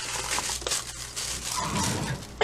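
Crinkling, rustling sound of something being handled, uneven and scratchy throughout.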